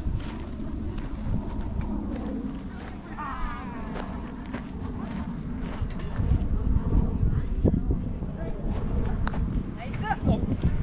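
Wind buffeting the microphone, heavier in the second half, with brief faint voices. A single sharp click of a park golf club striking the ball comes a little past halfway.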